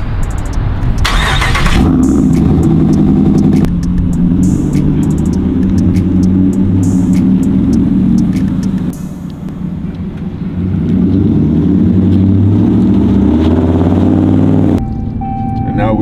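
Ram pickup truck's engine starting about a second in, then running with a deep, steady exhaust note as the truck pulls away, easing off briefly around the middle and building again.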